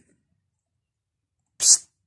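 A single short, sharp hissing burst near the end, after near silence.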